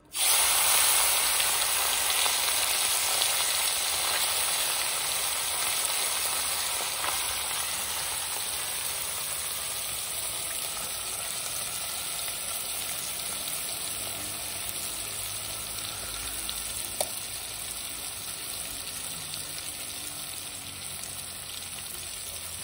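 Hot oil in a black iron kadhai sizzling as a handful of spice-marinated small fish with chillies, tomato and onion is dropped in. The sizzle starts suddenly, loud at first, and slowly dies down as the food fries.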